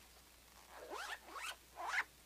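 Zipper on a black binder cover being pulled in three short strokes, each rising in pitch, the last the loudest.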